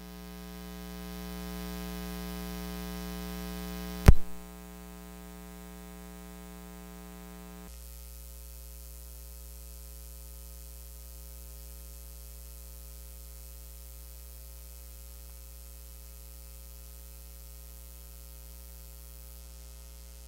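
Steady electrical mains hum from the PA system, a low buzz with many overtones. A single loud thump comes about four seconds in. At about eight seconds the hum drops to a quieter level and carries on.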